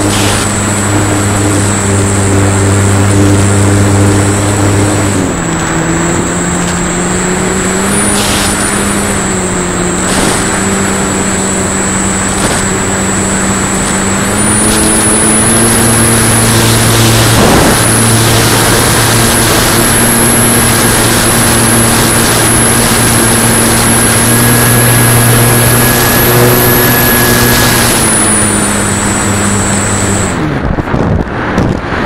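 Electric motor and propeller of a Flyzone Switch RC plane heard from an onboard camera: a loud, steady buzz with a high whine. The pitch drops as the throttle is eased about five seconds in, rises higher around the middle, and falls back near the end.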